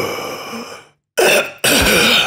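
A man's drawn-out gasp trailing off and fading, a moment of dead silence, then a short throat-clearing cough just past the middle.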